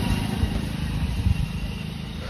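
Motorcycle engine running as it passes close by on the road, the sound slowly fading as it moves away.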